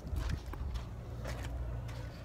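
Footsteps and handling noise from a hand-held phone, a few soft irregular knocks over a steady low rumble.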